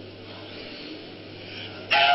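Steady background hiss with a constant low hum, the noise floor of old film audio. Right at the end a much louder pitched sound cuts in abruptly.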